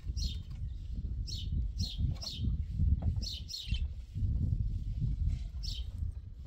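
Small birds chirping over and over, short high sweeping notes about twice a second, over a steady low rumble.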